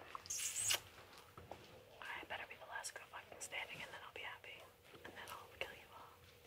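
Soft whispered speech, too quiet for words to be made out, with a short louder hiss under a second in.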